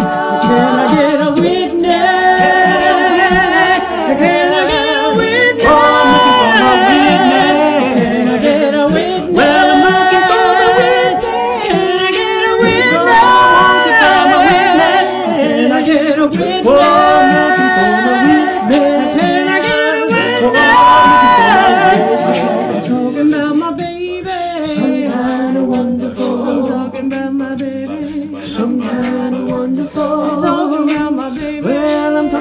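Mixed-voice a cappella group of men and women singing in close harmony with no instruments, holding chords together with vibrato. The singing grows softer in the last third, carried by a low sustained bass part.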